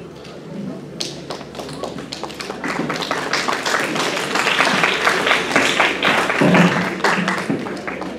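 Audience applauding: many hands clapping, starting about a second in, growing fuller, then thinning out near the end.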